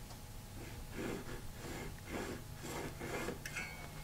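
Faint scratching of a mechanical pencil drawing short lines on a wooden board, several quick strokes about half a second apart.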